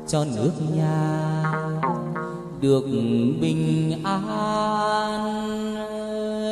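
A male chầu văn singer holds long vowel notes in a slow, melismatic line, sliding between pitches, with a đàn nguyệt moon lute plucked along with him.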